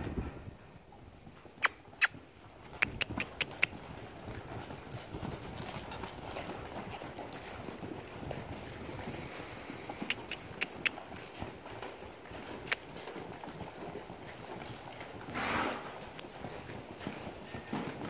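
Hooves of several saddled horses or mules moving at a trot and lope over the soft sand of an arena floor, heard as low, muffled footfalls and scuffing. A few sharp clicks stand out about two seconds in, with smaller clicks later.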